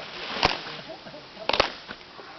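Sharp, crisp hand strikes from a group of people doing an action dance: one about half a second in, then a quick double about a second and a half in.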